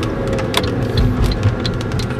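Car driving, heard from inside the cabin: steady engine and road rumble, with scattered irregular taps of raindrops starting to hit the car.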